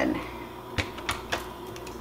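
A few light, sharp clicks from a Hamilton Beach Stay or Go slow cooker's lid and its side clips being handled and latched, over a faint steady hum.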